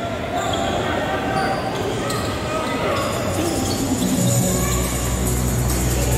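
Basketball being dribbled on a hardwood court amid the continuous murmur of an arena crowd and voices. A steady low hum comes in about four and a half seconds in.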